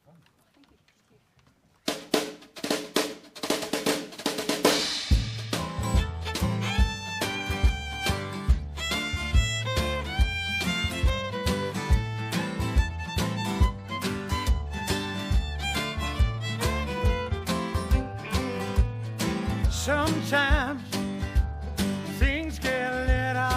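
Live country-folk band playing an instrumental intro on acoustic guitar, upright bass and drums. Sharp drum clicks start about two seconds in, and the full band comes in at about five seconds with a steady beat and bass line.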